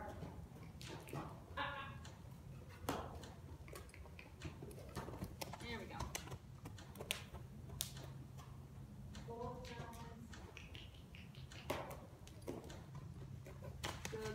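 Mule colt's hooves on soft arena dirt as it moves around on a lead line: irregular short clicks and soft thuds, with brief murmurs from the handler's voice.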